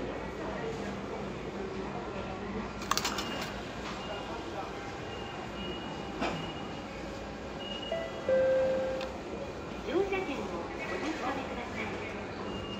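Toshiba EG-5200 automatic ticket gate taking in and returning a paper ticket. A quick cluster of clicks from the ticket transport comes about three seconds in, and a short steady beep a little past eight seconds. Voices and a steady hum from the station run underneath.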